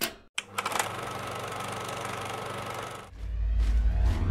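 Film projector sound effect: a mechanical clatter with a steady hum, starting after a brief gap and running for about two and a half seconds. About three seconds in it gives way to a deep bass swell of music.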